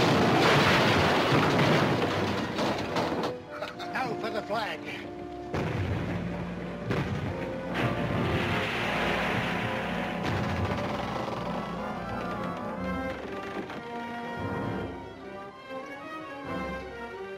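Cannon fire in a film soundtrack: a loud blast rumbles and dies away over the first three seconds or so. Orchestral film score plays under it and carries on alone after.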